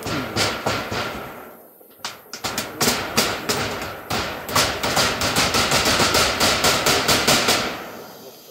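Hammer blows nailing a corrugated metal roofing sheet down onto a wooden roof frame: strikes come in quick succession, pause briefly about two seconds in, then resume as a fast even run of about three blows a second that stops just before the end.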